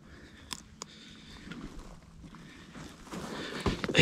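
Dry twigs and brush rustling and crackling under a person shifting position and getting down prone, growing louder toward the end. Two small sharp clicks about half a second in.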